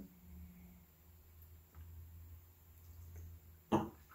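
Quiet room with a faint low hum, then near the end a single short throat sound, a brief throat-clearing "hm" from a man who has just sipped wine.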